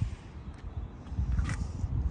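Wind buffeting a handheld phone microphone as an uneven low rumble, with a click at the start and a couple of brief faint hissy scuffs.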